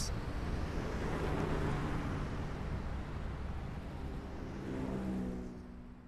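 Steady low rumbling background noise, with faint sustained low tones coming in about four and a half seconds in, fading out at the very end.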